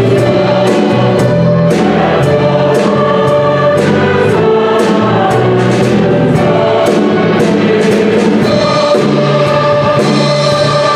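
Mixed choir singing a Christmas anthem with piano, violin and drum kit accompaniment, the cymbals keeping a steady beat.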